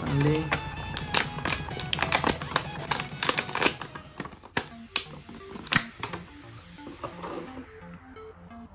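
Thin clear plastic blister tray crackling and clicking as an action figure is worked out of it by hand, dense for about four seconds and then sparser, over background music.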